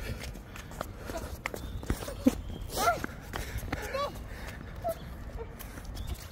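Soccer ball being dribbled on a hard court: irregular light knocks of foot on ball and shoes patting the surface, the sharpest a little over two seconds in. Two brief sliding voice sounds come near the middle.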